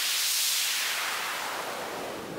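Synthesized white noise from Sytrus's noise oscillator, played as a held note through its filter: a steady hiss with most of its energy in the highs, swelling slightly and then easing off.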